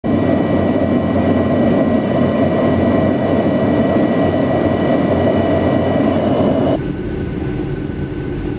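Jet airliner cabin noise at a window seat: a loud, steady roar of engines and airflow with thin, steady whining tones over it. About seven seconds in it changes abruptly to a quieter, duller cabin hum.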